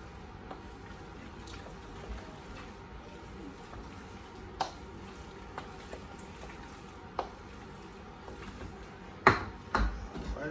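A spoon stirring in a stainless steel mixing bowl, giving a few light clinks against the metal now and then and two sharper, louder knocks near the end.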